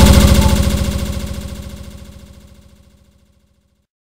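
Final held low synthesizer note of a Brazilian funk montage track, pulsing rapidly as it fades out steadily over about three seconds to silence just before the end.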